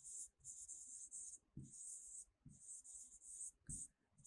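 A pen writing on a board: a run of faint, short scratchy strokes with brief gaps between them, as letters are written out.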